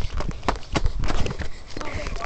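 Hurried footsteps: a quick, irregular run of thuds and scuffs.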